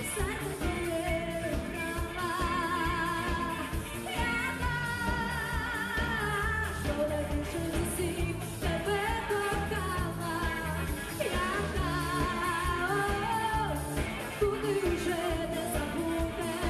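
A woman sings a pop-rock song live into a microphone with a full band of electric guitars and drums. Her voice carries a wavering vibrato on long notes over a steady beat.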